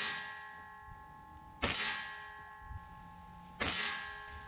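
Diana XR200 .22 regulated PCP air rifle firing, two shots about two seconds apart just after one at the very start. Each shot is a sharp crack followed by a long metallic ringing.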